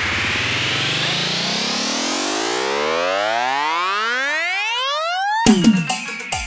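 Electronic DJ-remix build-up: a rising pitch sweep climbs steadily for about five seconds, then cuts off abruptly as hard drum hits and deep bass thumps that fall in pitch come in near the end.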